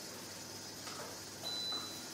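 Quiet room tone with a faint background hiss and a few soft stirs; near the end a short, faint, high-pitched electronic beep lasting about half a second.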